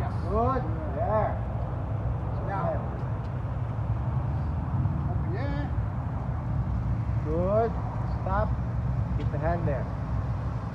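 Short, quiet spoken words now and then over a steady low background rumble.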